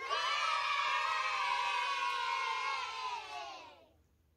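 A group of children's voices cheering together in one long drawn-out shout that starts suddenly, holds for about three seconds, then drops in pitch and fades out near the end.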